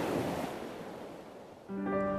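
A soft, steady outdoor noise bed fades away, and near the end a held chord of background music comes in.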